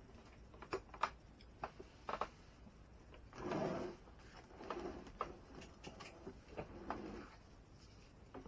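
Scattered clicks and knocks of plastic and metal RC truck parts being handled on a wooden workbench during disassembly. There is a louder scrape or rustle about three and a half seconds in, and two softer ones later.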